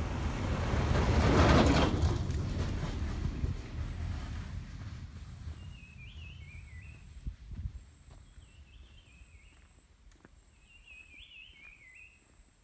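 Small pickup truck driving past on a rough track; engine and tyre noise loudest about a second and a half in, then fading away. As it dies out, a bird sings three short warbling phrases, a few seconds apart.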